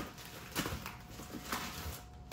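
Plastic packaging rustling and crinkling as a wrapped package is handled and opened by hand, with a few short sharper crackles.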